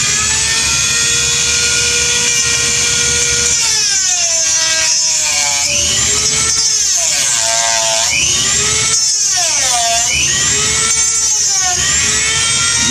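Dremel MultiPro rotary tool with a cutoff wheel running at a steady high-pitched whine, then cutting into a metal half-inch PEX clamp. From about four seconds in, its pitch dips and recovers again and again as the wheel is pressed into the metal and eased off.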